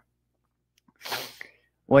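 A short, breathy intake of breath, about half a second long and about a second in, picked up close on a headset microphone, between stretches of dead silence.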